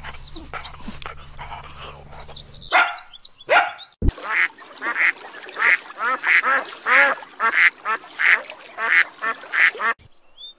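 A Belgian Shepherd (Tervuren) dog barks twice, about three seconds in. After an abrupt cut, white domestic geese call over and over, about three calls every two seconds, until the end.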